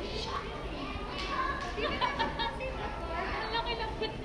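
Indistinct voices and chatter, with a couple of short runs of quick sharp strokes.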